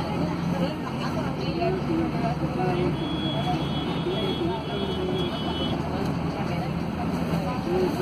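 Inside a Mercedes-Benz OC500LE city bus on the move: the steady drone of its OM936 six-cylinder diesel, with road noise and passengers talking in the background. A faint high whine comes in for a few seconds in the middle.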